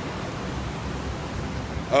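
Steady rushing background noise with a low rumble, with no distinct events in it.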